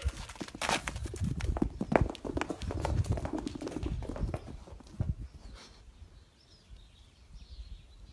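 A young calf's hooves clip-clopping on hard ground in a quick, irregular run of steps that dies away after about five seconds.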